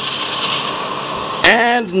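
Foil-lined baking tray sliding onto an oven shelf, a steady scraping rush, then the oven door shutting with a sharp clunk about a second and a half in.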